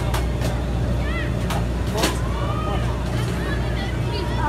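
Steady low mechanical hum, with distant voices and a few sharp clicks.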